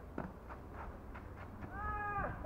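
A tennis racket strikes the ball sharply just after the start, followed by a few lighter knocks as the rally goes on. Near the end a loud, high, drawn-out call begins.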